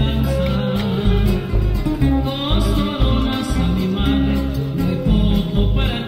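Acoustic guitar trio playing a Mexican song: plucked and strummed guitars over a deep bass line that changes note about every half second.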